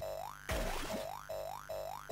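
Atari STE demo music in a techno style: a short synth note that slides upward, repeating about two and a half times a second, with one drum hit about half a second in.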